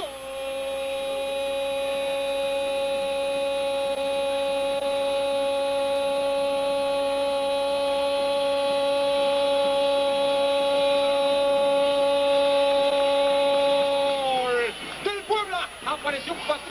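A TV football commentator's drawn-out goal cry, a single held "gol" note lasting about fourteen seconds that swells slowly in volume, then slides down in pitch and breaks off near the end.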